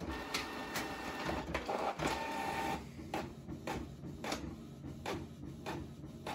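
Canon PIXMA MG3650 inkjet printer printing a page in colour only, with no black ink in use. A steady motor whirr with a whine runs for about the first three seconds, then gives way to a run of regular clicks and short whirs about two a second as the sheet feeds out.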